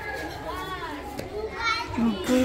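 Faint children's voices in the background, with a short call about half a second in and another near the end.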